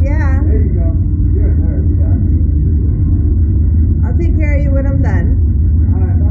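A woman's laughter and wordless vocal sounds, once at the start and again about four seconds in, over a steady low rumble.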